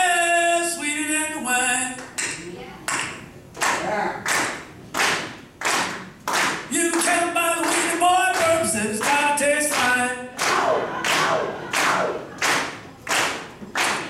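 A man singing unaccompanied, keeping time with steady handclaps, about three claps every two seconds; the claps carry on alone between the sung lines.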